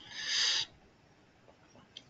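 A man's short breath drawn in between sentences, a hissy intake that swells for under a second and then stops.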